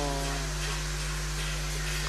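Steady low hum with an even hiss, the tail of a man's drawn-out word fading out at the very start.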